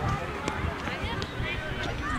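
Faint, distant voices of players and spectators calling across an outdoor football pitch, with a couple of faint sharp knocks.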